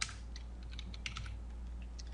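Computer keyboard being typed on: several separate keystrokes, the first the loudest, over a faint steady low hum.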